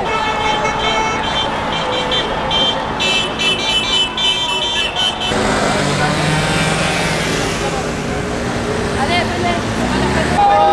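Car horns honking in repeated short toots over crowd noise. About five seconds in, this gives way to street traffic noise with a low steady engine hum.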